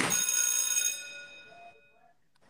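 A single bright bell-like chime, struck once and ringing out with several tones that fade over about a second and a half.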